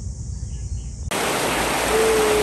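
A low rumble with a steady high hiss, then about a second in a sudden switch to loud rushing water: a shallow stream running fast over rocks.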